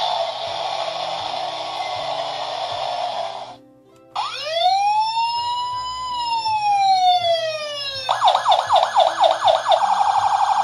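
Tonka Toughest Minis toy fire engine playing its electronic sound effects through a small speaker: a noisy rushing sound for about three and a half seconds, a brief pause, then a siren wail that rises and falls, switching near the end to a fast yelping siren.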